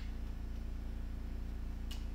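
A steady low electrical hum, with a single faint click near the end as trading cards are handled.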